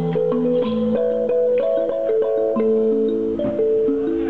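Toy music: a small toy instrument played by hand, a tune of held notes stepping up and down a few times a second over a lower second part.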